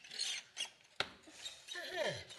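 A short rasping scrape, then a single sharp click about a second in, like a door handle and latch being worked. Near the end comes a brief falling sound of a voice.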